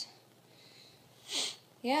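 One short sniff through the nose, about a second and a half in.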